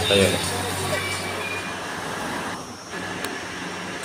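A short group shout, then steady outdoor background noise with no clear source.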